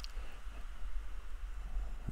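Oxy-fuel torch flame hissing steadily while it heats a small O1 tool-steel blade to red heat for hardening.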